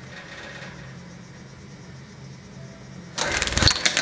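Wire birdcage rattling as a hand handles it: a short loud burst of rapid clattering starting about three seconds in, over a steady low hum.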